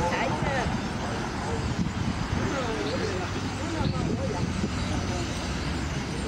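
A large flock of birds gives scattered squealing calls that glide up and down in pitch, over a steady hum of traffic.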